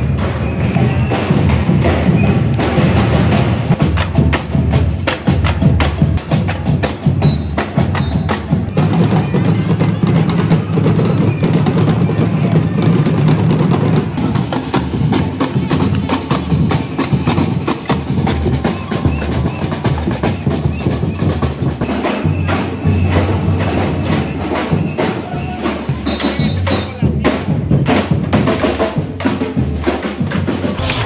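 Street percussion band playing a dense, driving drum rhythm with many rapid hits, with crowd voices mixed in.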